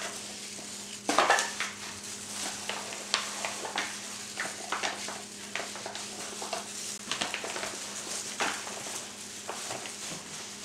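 Gloved hands rubbing a wet seasoning paste into a leg of lamb in a thin disposable aluminum foil pan: irregular crinkles and crackles of the foil and rubbing of the meat, with a louder burst of crackling about a second in.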